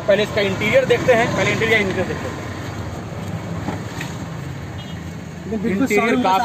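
A voice for about the first two seconds, then a steady low rumble of a motor vehicle running, with voices returning near the end.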